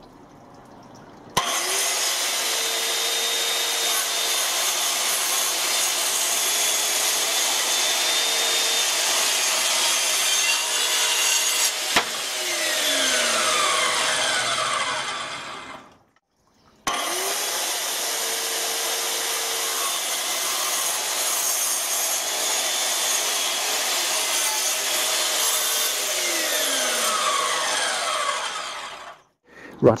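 Handheld circular saw cutting decking boards in two long runs. Each run starts with the motor spinning up in a short rising tone, holds loud and steady through the cut, and ends with a falling whine as the blade winds down. The two runs are split by a brief silence about halfway.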